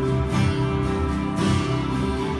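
Acoustic guitar being strummed, its chords ringing on, with two accented strokes about a second apart.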